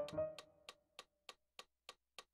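A single digital-piano note dies away over the first half second, leaving a metronome clicking steadily at about three clicks a second.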